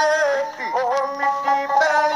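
A ragi folk singer's solo male voice, singing in a high, long-held, ornamented line whose pitch wavers and bends between notes, with a short dip about half a second in.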